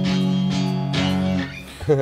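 Electric guitar played through a Fractal Audio Axe-Fx III on a basic crunch patch. Chords ring out, one more is struck about a second in, and the sound fades out about a second and a half in.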